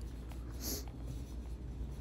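Steady low room hum with a brief rustle a little under a second in, and a few faint clicks.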